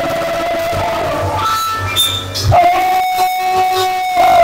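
Live church worship band playing slow music in long held notes, a new note coming in about two and a half seconds in.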